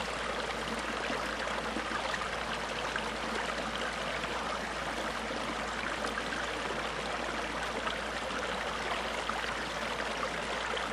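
Steady, even rushing background noise like running water, unchanging throughout with no distinct events.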